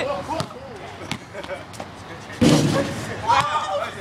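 A basketball bouncing on a gym floor with a few sharp smacks, then a loud, heavy slam about two and a half seconds in from a dunk attempt at a lowered hoop, with children's voices.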